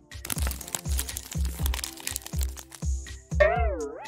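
Clear plastic packaging being crinkled and pulled off, in a run of crackles, over background music with a steady beat. Near the end comes a wavering pitched sound that rises and falls.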